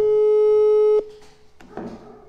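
Electronic tone of a phone or video call connecting: one steady, loud beep about a second long that cuts off suddenly.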